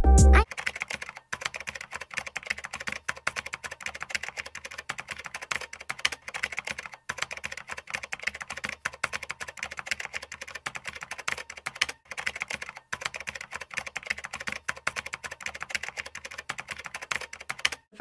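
Rapid computer-keyboard typing, many keystrokes a second, in runs with brief pauses about a second in, around seven seconds and around twelve seconds. It is a typing sound effect laid under text being typed out on screen.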